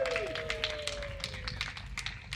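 Scattered audience clapping, irregular sharp claps, while the last held note of the song's backing track fades out over the first second and a half.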